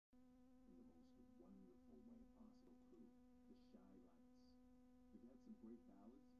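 A faint, steady buzzing hum on one low pitch, with faint indistinct voices underneath.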